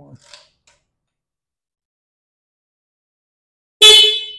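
A quiet pause, then near the end a short, loud honk from the 2024 Honda Navi scooter's horn: one steady pitched tone.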